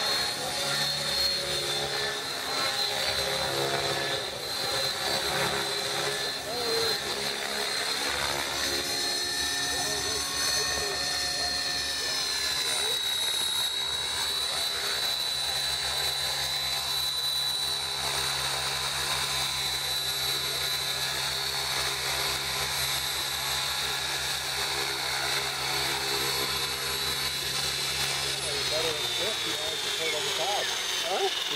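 Align T-Rex 600E electric RC helicopter in flight: a steady high whine from the brushless motor and drivetrain over a rapid chop from the rotor blades, with the pitch shifting as it manoeuvres. Near the end the whine drops as it lands and the rotor spools down.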